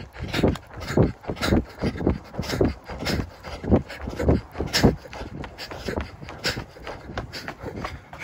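A runner's heavy breathing close to the microphone, in short puffs of about two a second.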